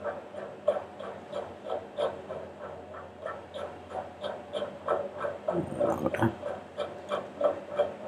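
Computer keyboard typing: quick, uneven key clicks a few per second, with a short murmur about six seconds in.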